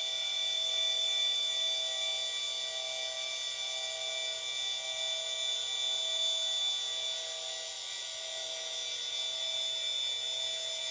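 Motors of a German equatorial telescope mount slewing the telescope to a new target, a steady high-pitched whine made of several tones.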